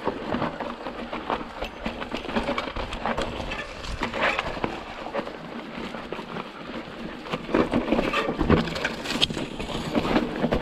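Fezzari Wasatch Peak hardtail mountain bike riding down loose, rocky singletrack: tyres crunching over rock and gravel, with a constant irregular rattle and clatter of knocks from the bike as it bounces over the chunky ground.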